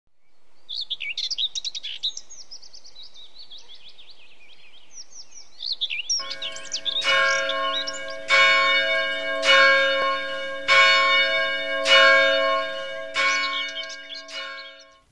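Birds chirping, then from about six seconds in a single church bell tolling, struck roughly every second and a quarter, each stroke ringing on into the next, with the birdsong still faint beneath it.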